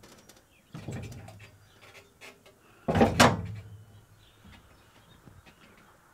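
Curtis aluminum tractor canopy being handled on its ROPS mount: a knock about a second in, then a loud metal clunk about three seconds in as the canopy is seated in its brackets.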